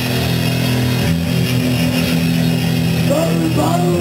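Distorted electric bass and guitar holding a steady low chord without drums. A voice calls out into the microphone in the last second.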